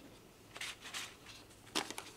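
A few faint clicks and rustles of pencils being handled in the case of a Cezanne graphite drawing pencil set as one is picked out.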